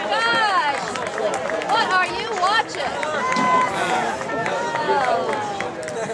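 Spectators' voices near the backstop: high-pitched calling and chatter with no clear words.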